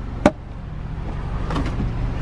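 A single sharp plastic click from a car sun visor's vanity-mirror cover snapping, about a quarter second in, over a steady low hum.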